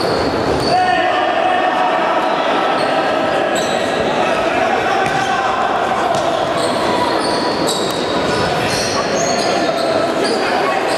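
Indoor futsal play in a large echoing hall: the ball being kicked and bouncing, sports shoes squeaking on the floor, and players shouting.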